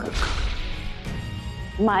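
A dramatic whoosh sound effect, a sudden swish that fades within about half a second, over a soft sustained background music bed. A voice starts near the end.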